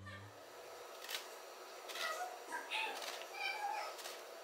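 Piano music fades out at the start, then faint, short, high-pitched calls that bend up and down, a few of them in the second half, with a few light clicks.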